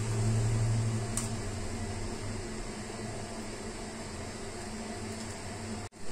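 A steady low hum with a faint hiss, loudest in the first second, and a single sharp click a little over a second in.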